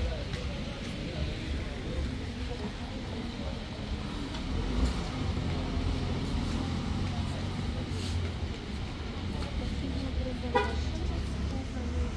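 Street ambience of a car's engine running low as it edges through a crowded pedestrian street, with people talking around it, and one short car-horn toot about ten and a half seconds in.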